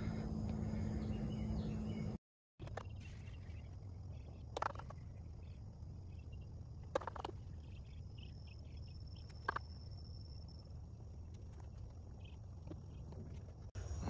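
Quiet outdoor background: a steady low rumble with a few faint, scattered clicks and a faint high insect buzz in the middle. The sound drops out briefly about two seconds in.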